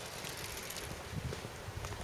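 Footsteps of a person walking, soft thuds in the second half, over a steady outdoor hiss.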